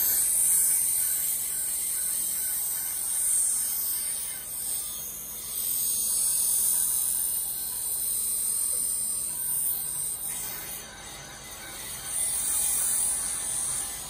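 Carbon-steel knife blade being ground on a bench grinding wheel: a steady high hiss of abrasion that swells and eases as the blade is pressed and moved along the wheel, dipping briefly a few seconds before the end.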